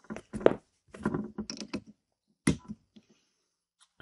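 Handling noises as a USB cable is plugged back into an Arduino Uno board: a run of small clicks and knocks in the first two seconds, and one sharper knock about two and a half seconds in.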